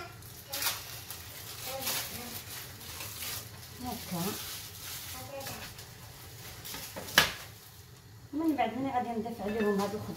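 Cheese portions being unwrapped and stirred into a bowl of shredded chicken-and-vegetable filling with a slotted spoon, the spoon scraping and knocking in the bowl, with one sharp knock about seven seconds in. Faint sizzling comes from a frying pan throughout.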